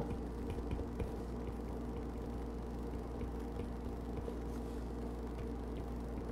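Steady low hum with faint background noise, and a few faint ticks in the first second.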